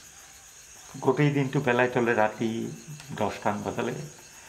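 A man speaking Assamese from about a second in, over a steady chorus of crickets chirping in a fast, even pulse.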